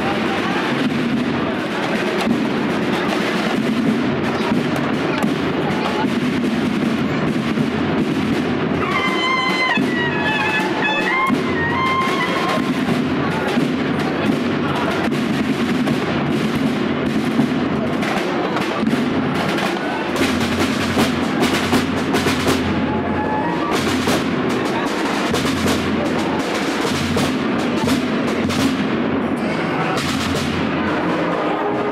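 Processional band music with drums and brass, played continuously, with many sharp drum strokes in the second half, over the chatter of a crowd.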